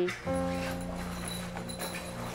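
A music cue: a chord of several steady notes held together, coming in about a quarter second in and slowly fading.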